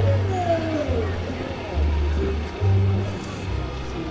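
Music with a prominent bass line stepping between notes, and a voice sliding down in pitch near the start.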